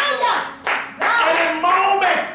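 Hand clapping in a church, with a man's voice calling out in drawn-out, held tones over it in the second half.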